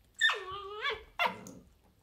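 A dog's high-pitched yelping bark that slides down in pitch and lifts at its end, followed by a second, shorter yelp about a second in.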